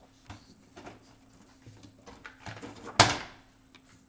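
Light handling noises, then a single sharp clack about three seconds in that rings briefly: a scanner lid being shut over a drawing laid on the glass.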